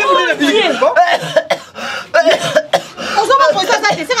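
Loud voices talking over one another, with coughing.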